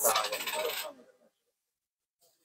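A brief, jangly clatter of handling noise that fills about the first second, then cuts off into dead silence.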